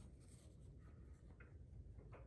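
Near silence: faint background noise with a low rumble.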